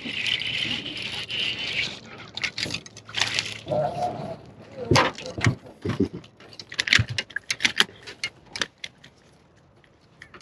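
A hooked chain pickerel being landed. For about two seconds it splashes at the surface, then comes a run of sharp clicks and knocks as it is swung aboard an aluminium boat and flops, with the line and lure rattling.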